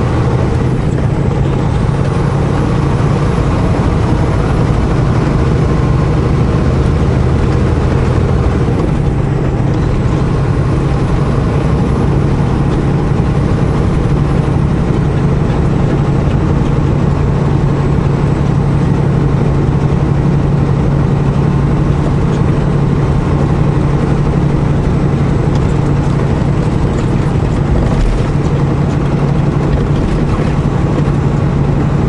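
Steady engine drone and tyre-on-road noise of a vehicle cruising at highway speed, heard from inside the cab.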